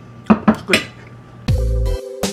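An eating utensil clinks sharply against a dish three times in quick succession. About one and a half seconds in, upbeat electronic music with a heavy bass beat starts.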